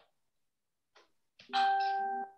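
Near silence, then about one and a half seconds in, a steady single-pitched alert tone sounds for under a second.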